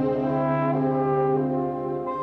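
Orchestral background score led by brass, horn-like chords held and then shifting to new notes twice.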